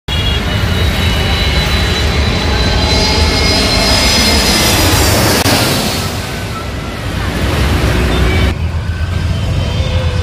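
Jet airliner engines whining as the plane comes in low on approach, over the steady noise of road traffic. The whine rises and swells about halfway through, then fades.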